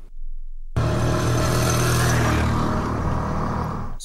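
Motorcycle engines running on a busy street, a steady loud sound that starts after a short silence.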